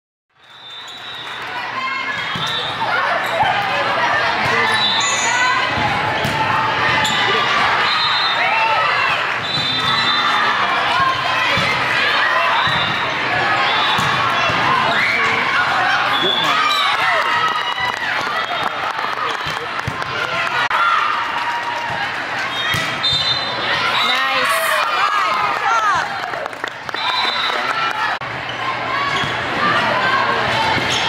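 Indoor volleyball play in a gymnasium: the ball being struck and hitting the floor at intervals, under the constant calling and chatter of many players and spectators, echoing in the hall.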